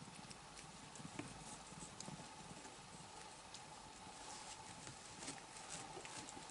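Very quiet room with scattered faint soft taps and rustles of cats moving about on a fleece blanket, over a faint steady hum.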